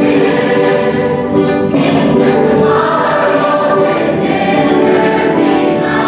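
A large high-school choir singing a slow song together, holding long notes that shift pitch a couple of times.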